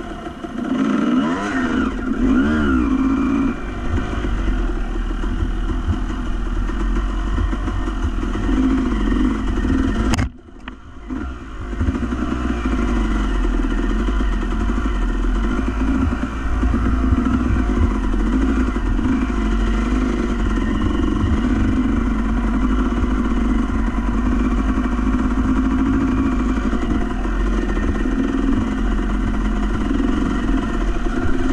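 Off-road motorcycle engine running under way, revving up and down in the first few seconds, then pulling fairly steadily. About ten seconds in a sharp click is followed by a brief dip in the sound before the engine comes back.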